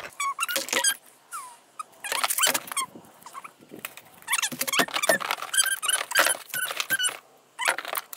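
A dog whining and yelping in a string of short, high-pitched cries, some sliding down in pitch.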